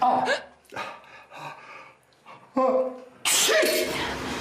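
A woman's short, wordless vocal outbursts: a sharp gasp-like burst at the start and a cry falling in pitch about two and a half seconds in. Then a sudden loud rushing noise sets in near the end and carries on.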